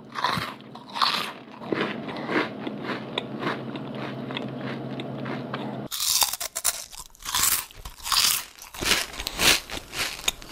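Close-up crunching and chewing of puffed corn snacks. It is first heard through a cheap headphone microphone, with a steady electrical hum underneath and a dull sound. About six seconds in it switches to a Sennheiser MKH 416 shotgun microphone, and the crunches become louder and crisper with no hum.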